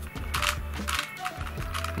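Plastic twisty puzzle clicking and rattling as its layers and corners are turned by hand: a few quick, irregular clicks. Steady background music plays underneath.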